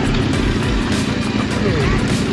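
A motorcycle engine running steadily under a constant rushing noise, with a faint voice near the end.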